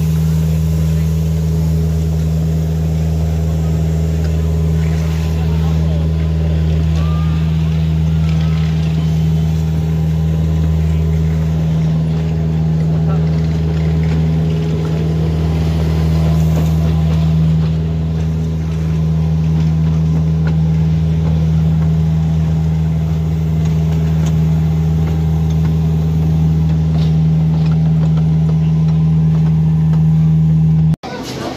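Miniature railway train running steadily along its track: a constant low engine drone from the locomotive, unchanging in pitch and level.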